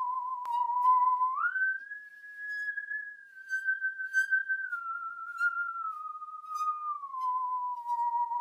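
Lead melody in a single pure, wavering tone, like a theremin or whistle, in a slow song intro. It slides up about a second and a half in, then steps slowly back down over the next several seconds.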